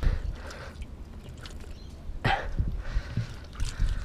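A taped crab-hook pole and an arm probing a mud crab burrow, with scattered scraping and squelching in wet mud over a steady low rumble of the body-mounted camera rubbing and shifting.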